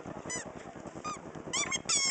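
Short, high-pitched squeals with a falling pitch: a couple spaced apart, then a quick run of them near the end.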